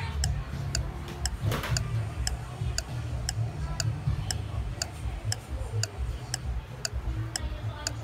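Clock-ticking sound effect, about two ticks a second, over a low steady rumble.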